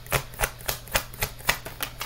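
A quick, fairly even run of sharp clicks or taps, about three or four a second.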